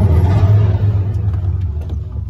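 Deep, steady low rumble of a film soundtrack played through a cinema's sound system, loud in the first second and a half and then fading.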